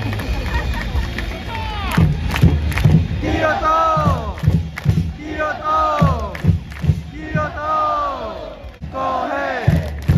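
Football supporters chanting in unison to drum beats: a repeated shouted phrase that falls in pitch about once a second, from about two seconds in.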